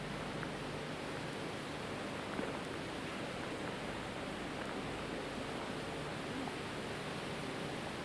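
Steady hiss and room noise of a low-quality recording, with a faint knock about two and a half seconds in.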